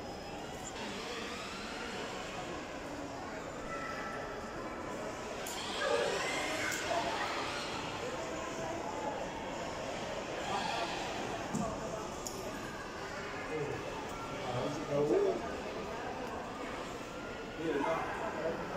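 Indistinct background voices of people talking in a large indoor public space, over a steady hum of the hall.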